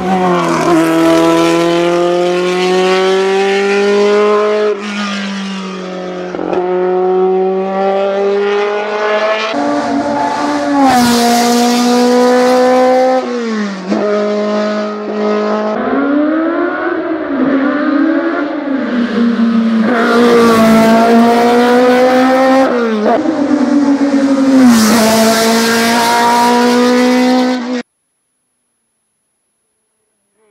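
Osella PA9/90 sports-prototype race car engine at full throttle, its pitch climbing through each gear and dropping sharply at every gear change, a dozen or so shifts in all. The sound cuts off abruptly just before the end.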